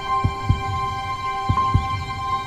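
Heartbeat sound effect in the film score: paired low thumps in a lub-dub rhythm, one pair about every second and a quarter, over held sustained music tones.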